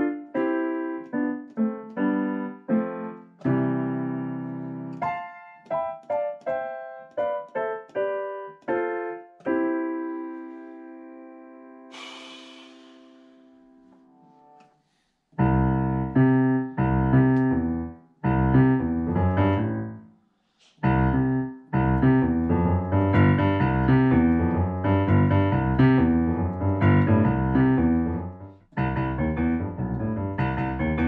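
Roland FP-30 digital piano played slowly in learner's practice: single notes and simple chords, each left to ring, dying away about halfway through. After a short silence come fuller repeated chords over a deep bass line, broken once by a brief gap.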